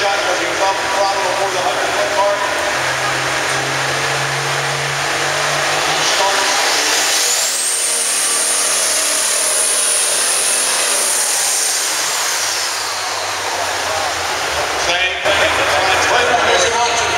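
Turbocharged pulling tractor's engine running and building, its turbocharger whine climbing to a high, steady whistle about six seconds in and falling away about five seconds later, over arena crowd noise.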